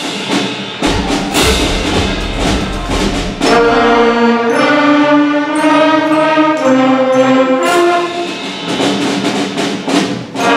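Sixth-grade concert band playing, brass and woodwinds on sustained chords that change every second or so. A deep low rumble runs under the band from about a second in to about four seconds in, with repeated sharp percussion hits.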